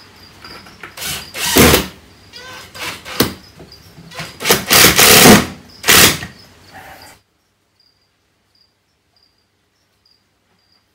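Cordless impact driver running in several short bursts, driving screws through timber into a terrarium's lid; the longest run is about two seconds, in the middle. Crickets chirp rapidly and steadily behind it, and everything but their faint chirping stops abruptly about seven seconds in.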